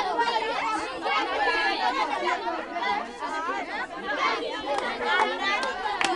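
A crowd of schoolchildren chattering and calling out all at once, with a few sharp taps near the end.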